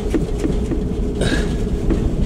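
Van cab noise while driving: a steady low engine and road rumble with a few light knocks and rattles from the body.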